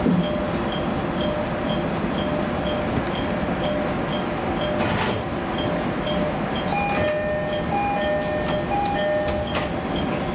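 JR Kyushu YC1 series hybrid railcar rolling slowly into a station, its steady running noise heard from inside the cab. A repeating electronic tone ticks about twice a second throughout, joined about seven seconds in by an alternating two-note tone pattern.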